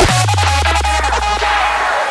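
Rawstyle hard-dance track: the kick drum drops out and one long low bass note slides slowly downward under short, repeated synth stabs.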